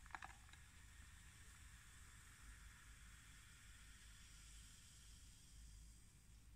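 Near silence: a faint steady hiss of room tone, with a brief faint sound right at the start.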